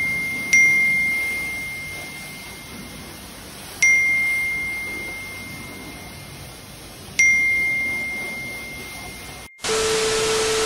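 Phone notification dings: three single bright chimes, each struck sharply and ringing down slowly, a few seconds apart, the alert of money coming in. Near the end they give way to a burst of hissing static with a steady low hum.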